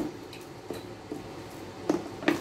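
A few faint clicks and taps as a metal beehive frame grip is handled and fitted onto a black plastic hive frame, the last click a little louder near the end.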